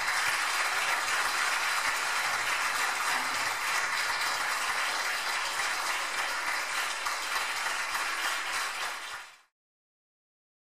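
Audience applauding, a dense steady clapping that cuts off suddenly near the end.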